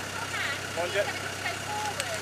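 Mostly voices calling out, over the steady low hum of a Land Rover Discovery 2's Td5 five-cylinder turbodiesel at idle.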